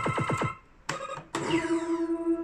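Electronic sound effects from a pachislot machine. A rapid run of falling chirps cuts off about half a second in, followed by a short blip. About a second and a half in comes a sudden electronic hit that leaves a steady held tone.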